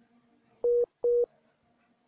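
Two short electronic beeps, each a single steady mid-pitched tone, about half a second apart.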